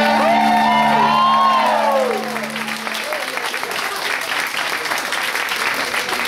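The end of a sung hymn: a low held chord fades out about three seconds in while voices call out with rising and falling pitch, then a congregation applauds.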